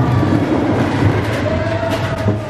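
Mine-train roller coaster cars running along steel track through a rock tunnel, a steady rumble with a few sharp clacks. A steady high tone joins about one and a half seconds in.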